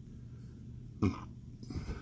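A man coughs once, short and sharp, about a second in, followed by softer throat-clearing sounds near the end.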